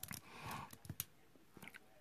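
Faint rustling and a scattering of small clicks from chopped onion pieces being tossed by hand on aluminium foil. Most of the sound falls in the first second, with a few clicks later.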